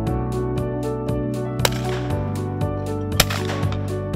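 Two shotgun shots about a second and a half apart, each with a short echo, heard over background music with a steady quick beat.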